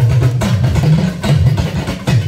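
Yoruba talking drum (dùndún) played live, its low pitch bending up and down from stroke to stroke as the drum is squeezed under the arm, with band percussion alongside.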